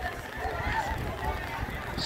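Faint, indistinct voices in the background over a low rumble.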